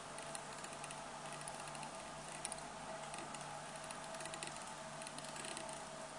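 Faint small clicks and rustles of fly-tying thread being wrapped from a bobbin around a hook through the hackle, over a steady hum.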